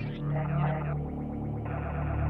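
Modular synthesizer drone music: steady low droning tones held underneath a fast, fluttering texture higher up.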